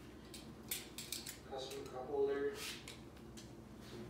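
Vinyl upholstery sheet rustling and crinkling in short bursts as it is handled and stretched, with a voice heard briefly in the middle.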